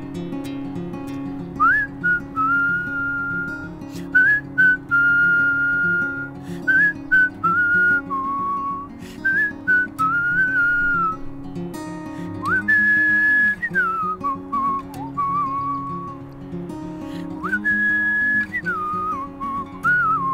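A man whistling a melody over his own acoustic guitar chords. The whistle comes in about two seconds in, in short phrases of one clear tone that slide up into their notes.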